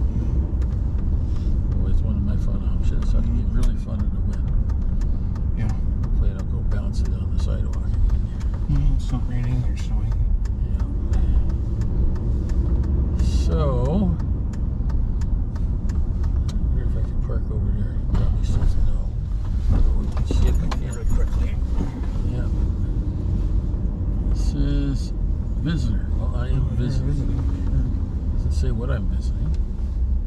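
Steady low rumble of engine and road noise heard from inside a car's cabin while driving at town speed.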